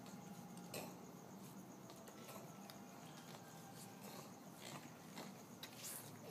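Near silence: faint steady background hiss with a few soft clicks, one about a second in and a cluster near the end.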